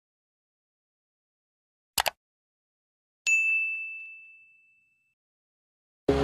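Two quick clicks about two seconds in, then a single bright bell-like ding that rings out and fades away over about a second and a half.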